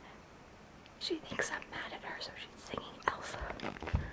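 A woman whispering close to the microphone, starting about a second in, with a few low thuds near the end.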